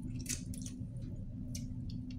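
Wet chewing and lip-smacking of a person eating soft stewed fish with his fingers, with sharp smacks about a quarter second in and again past halfway. A steady low hum runs underneath.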